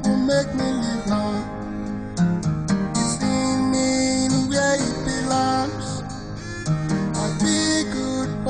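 Acoustic guitar playing an instrumental passage of a song, notes plucked and strummed, with light percussion above.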